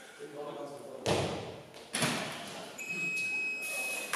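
Two heavy thumps about a second apart on the wooden lifting platform as a weightlifter drives a loaded barbell up in the jerk and his feet land. Near the end comes a steady high electronic beep lasting about a second, the down signal to lower the bar. Voices murmur in the hall.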